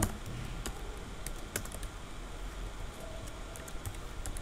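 Computer keyboard keys clicking in irregular runs as code is typed, over a faint low hum.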